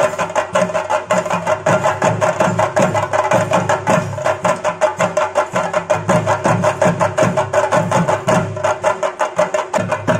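A large chenda drum ensemble played fast and continuously with sticks: dense, even strokes with a pulsing low beat, over a steady ringing tone.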